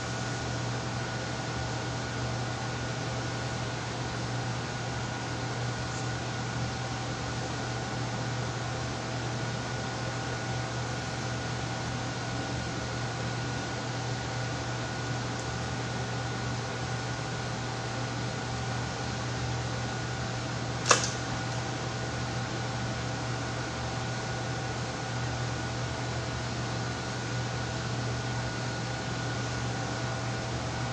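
Steady hum of a ventilation fan with a few faint steady tones over it. A single sharp click about two-thirds of the way through.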